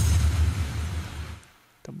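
An EDM impact played back from the mix: a sudden crash-like hit whose bright noise wash fades over about a second and a half, layered with a deep boom that sweeps down in pitch.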